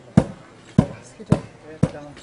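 A long pole being worked up and down in a wet, muddy hole, striking the bottom with four sharp knocks about half a second apart, as when hand-boring a shallow well.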